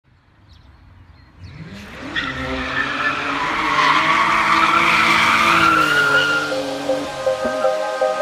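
Car sound effect: an engine revs up and holds high with tyres squealing. It fades in over the first two seconds and dies away about seven seconds in, as electronic music starts.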